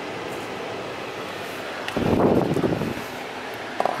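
Steady background hiss of a car's ventilation fan, with a rustling handling noise lasting about a second, a little after halfway, as the handheld milligauss meter is picked up off the floor.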